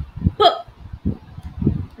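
A woman's voice saying the letter sound 'p' in isolation: a short puffed sound about half a second in, with a few soft low breath pops on the microphone around it.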